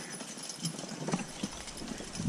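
Hooves of a team of two Percheron draft horses clopping softly and irregularly as they walk a dirt track.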